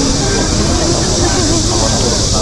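Busy street-market crowd: several passers-by talking at once, overlapping voices with no single clear speaker, over a steady high hiss and low rumble.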